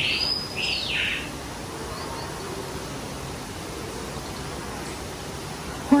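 Recorded bird call played from an exhibit's push-button speaker panel: two high calls in the first second, each sweeping up and back down in pitch, over a steady background hiss.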